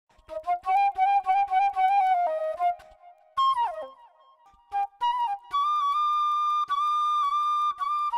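Solo flute melody. A run of quick, short notes gives way to a falling slide just before the middle, then a short pause, then a long held high note near the end.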